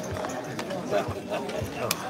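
Background chatter of a casino card room with several short, sharp clicks and taps from cards and chips being handled at the table; the sharpest click comes near the end.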